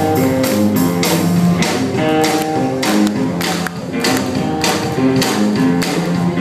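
Rockabilly band playing live: guitar to the fore over upright bass and a steady, driving drum beat, with no singing.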